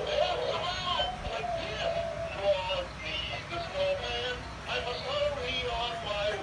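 Animated snowman figure singing a song in a synthesized voice over its own music backing, through its small built-in speaker.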